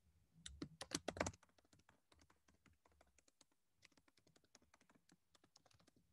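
Faint typing on a computer keyboard: a quick run of keystrokes in the first second and a half, then fainter, scattered key taps.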